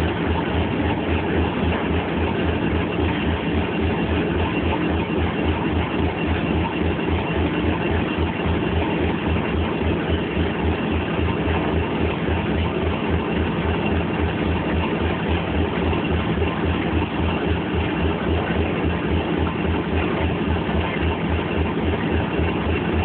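Class 37 diesel-electric locomotives idling, a steady deep throb with an even, regular pulse.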